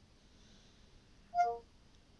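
Short falling two-note chime from the Cortana app on an Android phone's speaker, about one and a half seconds in, as the assistant takes the spoken request.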